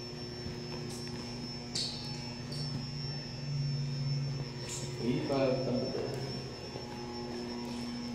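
Indoor room tone dominated by a steady low electrical hum with a thin high-pitched whine above it. A voice is heard briefly in the background about five seconds in.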